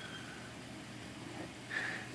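Quiet room tone: a low, steady hiss with no distinct sound.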